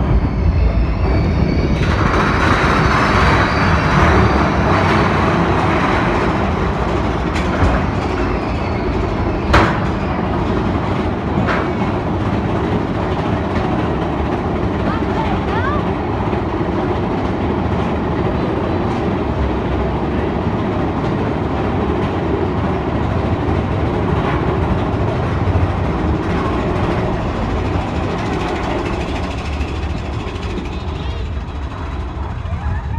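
Big Thunder Mountain Railroad mine-train roller coaster running along its track with a steady loud rumble and clatter. A louder rushing noise comes in the first few seconds, and a sharp clack comes about ten seconds in.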